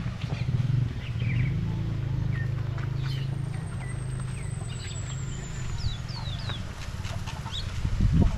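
Birds chirping in short calls over a steady low hum that fades near the end; a thin high whistle slides slowly down in the middle.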